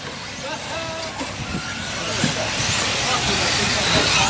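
Electric short-course RC truck running on the dirt track: a hiss of tyres and motor that grows louder toward the end.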